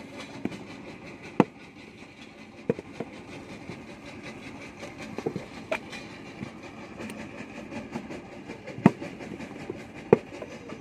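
Hand-moulding a clay brick in a wooden mould: sharp knocks and slaps of wet clay and the mould against the ground, the loudest about a second and a half in and near the end, with smaller knocks and scraping between. Under them runs a steady background rumble.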